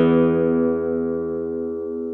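A chord on a David Heaton 2016 curly maple flamenco guitar ringing out and slowly dying away after a strum, its upper notes fading first.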